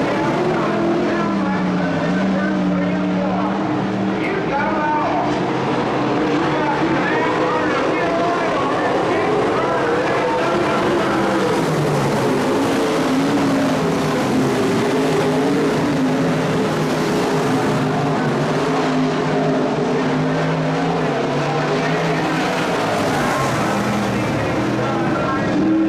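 IMCA modified dirt-track race cars' V8 engines running at racing speed, several at once, their pitch rising and falling as they go around the oval.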